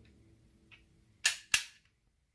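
Two sharp clicks about a third of a second apart, a little over a second in: the opening doors of a small die-cast toy car snapped shut.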